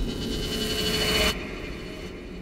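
Tail of a cinematic logo sound effect: a bright hissing swell with a held tone that cuts off suddenly just over a second in, then a fading low tail.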